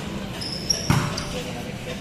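A volleyball being hit during a rally: one sharp slap about a second in.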